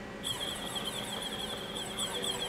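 Femco HL-25 CNC lathe's tool turret being run round from the control panel, its drive giving a high, wavering whine that starts a fraction of a second in.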